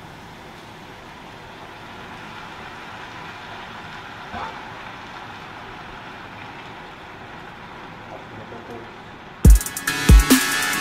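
Steady hiss of a pot cooking on a gas stove as chopped tomatoes go in and are stirred, with a faint knock about four seconds in. Electronic music with a heavy bass-drum beat cuts in near the end.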